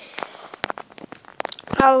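Scattered small clicks and rustles from a handheld phone being handled, with a sharper knock a little past half a second in. Near the end a boy's voice starts a word.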